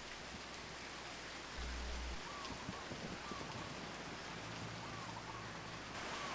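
Faint, steady hiss of distant surf washing over a rocky seawall, with a brief low rumble about a second and a half in.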